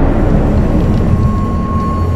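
Car driving at speed: a steady, loud, low rumble of engine and road noise. A faint thin steady tone joins it about a second in.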